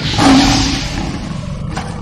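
Lion roar sound effect, loud at the onset and fading away over the next second or so, with a short sharp hit near the end.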